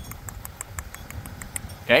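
Faint, irregular high-pitched clicking, about ten ticks, over a low rumble of wind on the microphone, with a man saying "okay?" near the end.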